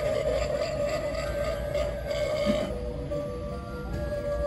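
Music playing from a Hyde & EEK! sound-activated animatronic ghoul prop, with a steady held note, between its spoken lines.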